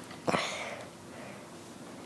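A hardcover picture book's page being turned and laid flat: one short paper swish about a quarter second in.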